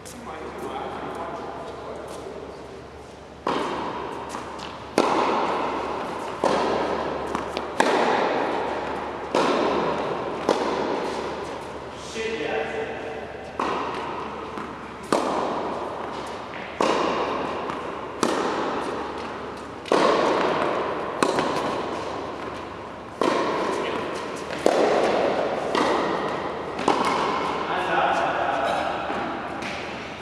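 Tennis balls being hit over and over, a sharp pop about every second and a half, each ringing out in a long echo through the large indoor court hall.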